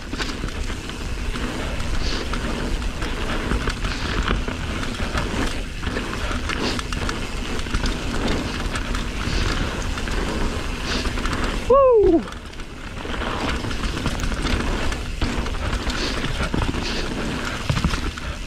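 Yeti mountain bike running fast down a dirt singletrack: steady tyre and trail rattle with wind on the microphone. About twelve seconds in, the rider lets out one short whoop that falls in pitch.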